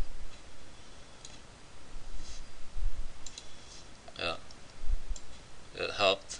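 Computer mouse button clicking at irregular intervals, with a few low dull thumps, as pixels are drawn in an editor. A brief voice sound comes about four seconds in, and speech begins at the very end.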